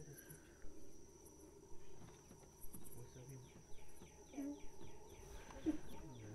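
Distant howler monkeys roaring, a faint low rumbling chorus that swells and fades, over a steady high insect trill.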